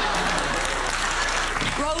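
Studio audience laughing and applauding after a punchline, a steady wash that gives way to speech near the end.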